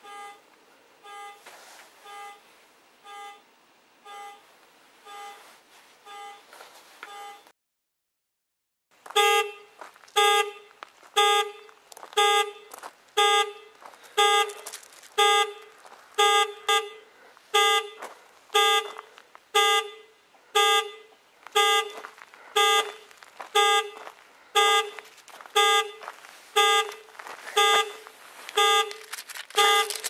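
Car alarm sounding, its horn pulsing in an even rhythm of about one honk a second. Fainter for the first few seconds, then after a short break much louder and closer for the rest.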